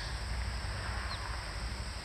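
Outdoor ambience: a steady hiss with a low rumble underneath, and one short chirp, likely a bird, about a second in.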